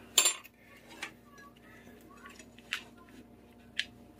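Cutlery clinking against dishes: one sharp clink just after the start, then three lighter clinks spread through the rest of the few seconds.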